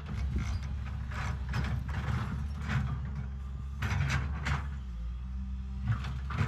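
L&T-Komatsu PC200 hydraulic excavator's diesel engine running steadily under digging load while its bucket teeth scrape and grind against rock and soil in a series of short crunching scrapes.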